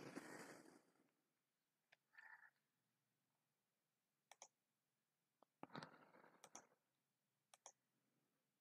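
Near silence broken by a few faint computer-mouse clicks, with a soft rush of noise at the start and another about six seconds in.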